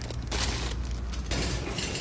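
Plastic-wrapped wipes packs rustling as they are handled over a wire shopping cart, with the cart rattling; the rustling is loudest from about a third of a second to just past one second in.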